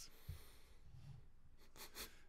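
Near silence: faint room tone in a small room, with a couple of faint brief rustles.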